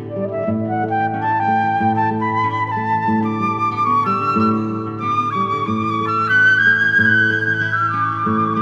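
Transverse flute playing a slow improvised melody that climbs step by step, highest about three-quarters of the way through, over a repeating plucked guitar accompaniment.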